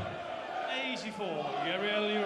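Darts arena crowd singing a chant, the many voices gliding and holding notes and growing louder in the second half. A single sharp knock at the very start, as a thrown dart strikes the board.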